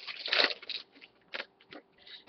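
Trading-card pack wrapper crinkling and tearing as it is ripped open, in a few short crackly bursts during the first second, followed by a couple of faint ticks.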